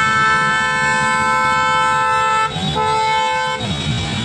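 A vehicle horn held down in one long steady blast. It breaks off briefly about two and a half seconds in, sounds again for about a second and then stops shortly before the end, over the low rumble of slow road traffic.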